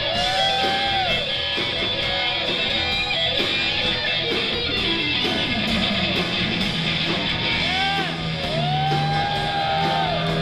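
Live rock band with a Telecaster-style electric guitar taking the lead, its notes bending up and falling back over bass and drums with steady cymbal ticks.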